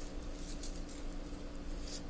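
Faint, brief rustling and scratching as a hand lifts a baby tegu lizard from a potted plant's leaves, over a steady low hum.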